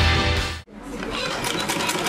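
Bumper music that cuts off abruptly about half a second in, followed by an old-style mechanical sewing machine stitching cloth with a rapid, even ticking.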